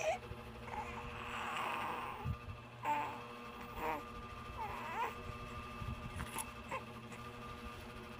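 A young infant cooing and making short, soft vocal sounds, a few brief calls that bend up and down in pitch, with a breathy stretch between them. A steady low hum runs underneath.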